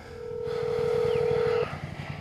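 Ringing tone of an outgoing phone call through a smartphone's speaker: one steady ring about a second and a half long that stops suddenly, over a low rumble.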